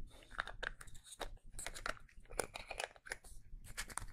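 Hands handling a plastic lotion tube: irregular crinkles, clicks and taps.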